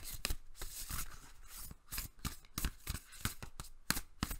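A deck of tarot cards being shuffled by hand, the cards snapping and slapping against each other in an irregular run of quick sharp clicks.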